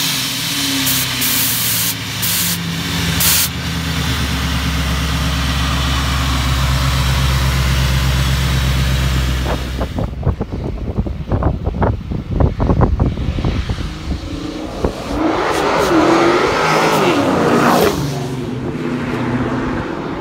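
The ProCharger-supercharged 6.4-litre HEMI V8 of a Dodge Challenger SRT 392 running loud, holding a steady deep note for several seconds after a few sharp bursts in the first three seconds. About halfway it turns choppy, then gives a whine that climbs and falls away as the car pulls.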